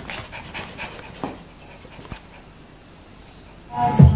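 A small dog panting with its tongue out, faint quick breaths at about four a second that fade out after a couple of seconds. Music starts just before the end.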